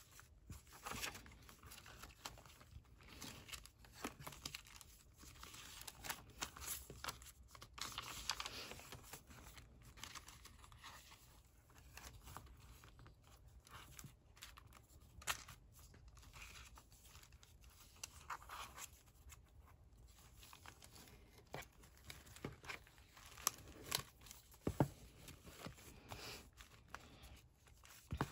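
Faint, intermittent rustling and crinkling of paper as the pages of a handmade junk journal are turned and pressed flat by hand, with small taps and clicks.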